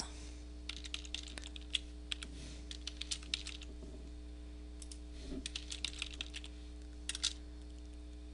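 Typing on a computer keyboard: two short runs of keystrokes with a pause between them and a couple more keys near the end, over a steady low hum.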